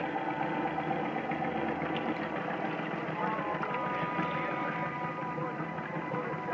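Radio-drama sound effect of the gasoline motor that drives a Ferris wheel running, its gas tank just dosed with pink lemonade, which spoils the motor. Held musical tones come in about three seconds in.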